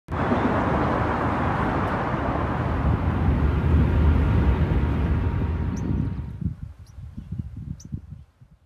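Wind rushing over the microphone, heaviest in the low end. It dies away in uneven gusts over the last two seconds, with a few faint high ticks near the end.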